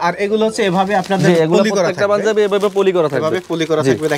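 A man talking continuously in a small room.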